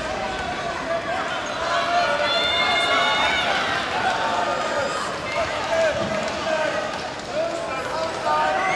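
Indistinct voices of players and spectators calling out over a basketball game, several at once, with a held higher-pitched shout about two seconds in, and a basketball bouncing on the court.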